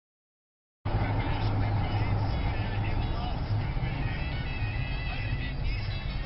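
Silence for almost a second, then sound cuts in suddenly: the steady low rumble of a car being driven, picked up by its dashcam from inside, with music and voices over it.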